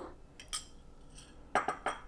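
Small metal spoon clinking against small bowls while scooping spice powder: one light click about a quarter of the way in, then a quick run of clicks near the end.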